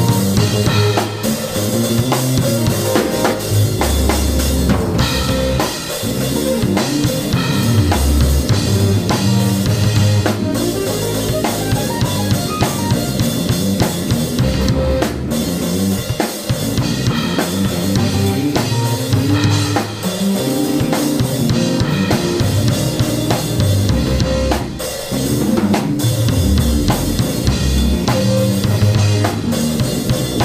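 Live instrumental jam on drum kit, electric bass and a Casio digital keyboard, with busy drumming of bass drum, snare and cymbals over a bass line and keyboard chords.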